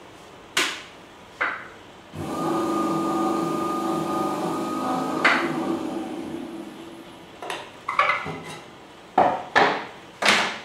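Sharp knocks of tools on the potter's wheel, then a steady scraping with a held ringing tone for about five seconds as the wet wheel head is worked while it turns, then several more quick knocks near the end.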